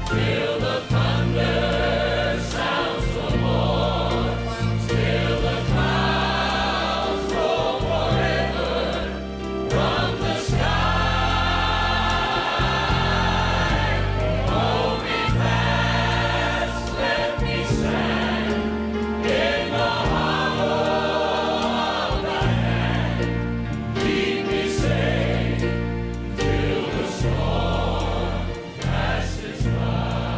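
A large group of voices singing a gospel song in harmony, with long held notes, accompanied by grand piano.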